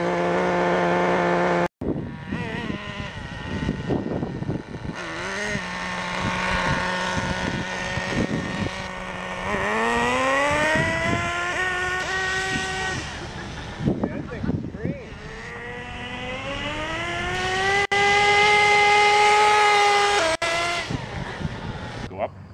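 Small two-stroke glow-fuel (nitro) engine of a Redcat Racing RC buggy running at high revs with a buzzing tone. Its pitch climbs twice as it accelerates, about halfway through and again near the end.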